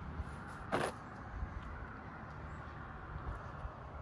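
Low, steady outdoor background noise, with one short, sharp sound a little under a second in.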